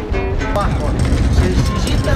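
Running rumble of a narrow-gauge train carriage on the rails, with people talking indistinctly over it; the last notes of an acoustic guitar die away at the very start.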